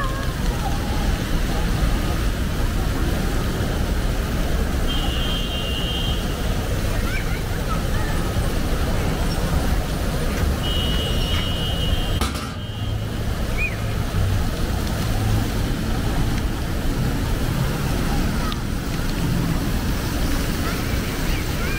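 Busy city-square ambience: steady traffic rumble mixed with the splash of ground-nozzle fountain jets and scattered voices. Two brief high-pitched tones sound about five seconds in and again near the middle.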